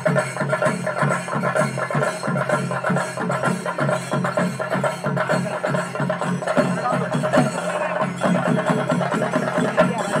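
Live traditional percussion ensemble playing a fast, steady drumbeat, with a steady held tone running over the drumming.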